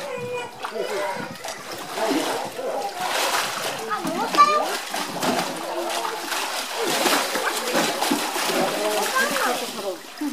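Water splashing and sloshing as a polar bear plays with a plastic jerry can and wades through its pool, with onlookers' voices, children among them, chattering throughout.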